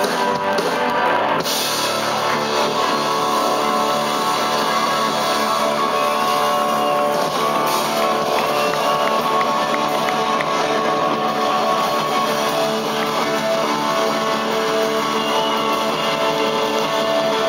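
Live rock band playing an instrumental passage with no vocals: electric guitar leading over a drum kit.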